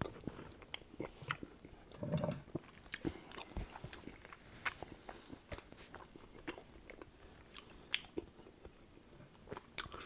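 Close-miked chewing of a spoonful of chili: soft wet mouth sounds with scattered small clicks and smacks.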